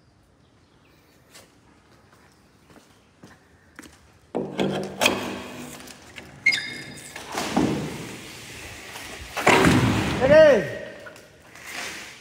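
Corrugated steel roofing sheet with foam backing being handled as a rope hook is fixed to its edge: after a quiet start, sudden knocks and metallic clatter with some ringing about four seconds in, then a man's shout near the end.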